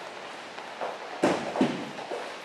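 Footsteps on a rubber-matted floor, with a single knock a little past halfway.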